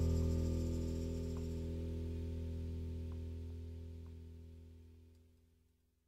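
The final held chord of a rock song ringing out and fading away, dying to silence about five and a half seconds in.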